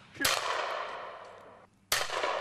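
Two shotgun shots from an over-and-under shotgun at clay pigeons: a sharp report about a quarter of a second in that rings away slowly over more than a second, and a second report right at the end.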